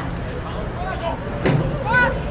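Scattered shouts and calls from football players and sideline onlookers over a steady background murmur, with a sharp sudden sound about one and a half seconds in and a louder rising shout near the end.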